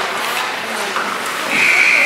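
A single high whistle blast that starts about one and a half seconds in and is held for about a second, at one steady pitch, in an ice rink.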